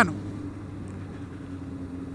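Motorcycle engine running steadily at cruising speed, with a constant low hum under road and wind noise.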